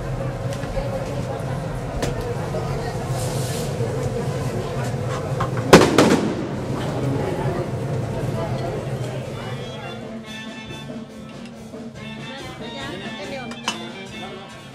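Two sharp, very loud bangs in quick succession about six seconds in, over a steady background of voices. Music with guitar comes in from about ten seconds.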